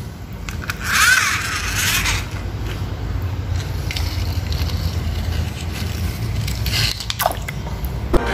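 Toy cars being handled in a dish of water and pushed about: steady low rumbling handling noise with some water sloshing and scraping. A brief high warbling sound comes about a second in, and a few light clicks near the end.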